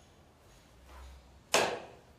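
A foot-operated caster brake on a wheeled machine cabinet being pressed down and locking with one sharp click about one and a half seconds in, after a softer bump a little before.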